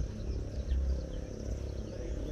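Outdoor field ambience: a steady low rumble on the microphone that swells slightly now and then, under a faint, steady high insect drone.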